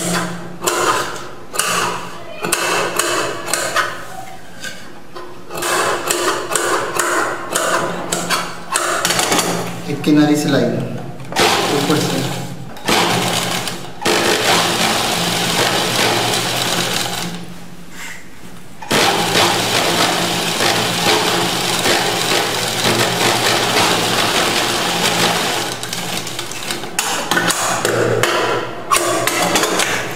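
Straight-stitch sewing machine running as it stitches dress fabric, in long continuous runs with a short stop past the middle. A voice talks over the first part.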